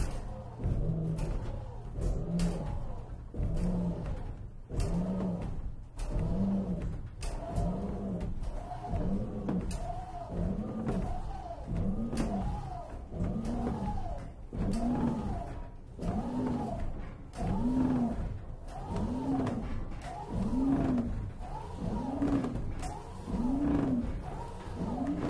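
Large bronze church bells cast by Cavadini swinging up in a wooden bell frame before the clappers begin to strike: a groaning creak that rises and falls in pitch with each swing, a little more than once a second, growing stronger as the swing widens, with light clicks in between.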